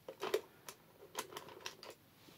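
A quick, uneven run of light clicks and taps, about eight in under two seconds, the loudest near the start: makeup products being handled and set down.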